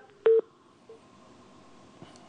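A telephone call dropping on the line: the caller's voice cuts off, a click and a short beep follow about a quarter second in, a fainter beep comes near one second, then only the faint hiss of the dead line.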